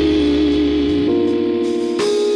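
Live band music, instrumental: sustained keyboard chords over bass guitar, with electric guitar. The chord changes about a second in.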